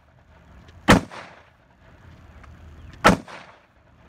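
Two rifle shots about two seconds apart, each trailing off in a short echo.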